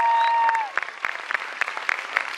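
Audience clapping in an auditorium at a graduation ceremony, heard as scattered separate claps. A steady high-pitched tone is held at the start and bends down before cutting off under a second in.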